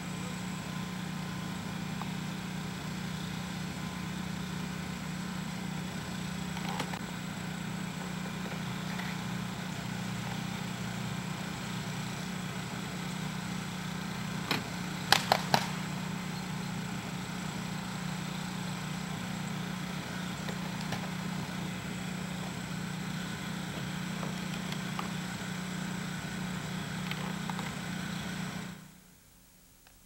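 A steady low mechanical hum, with a quick run of three sharp knocks about halfway through; the sound drops away suddenly near the end.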